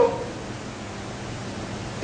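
A pause in a man's speech, filled only by a steady hiss of background noise in the recording.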